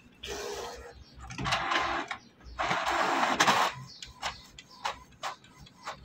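Canon PIXMA TS5340a inkjet printer running an automatic two-sided print job. Its paper-feed and print mechanism whirs in three bursts, the last and loudest about two and a half to three and a half seconds in, followed by a few light clicks.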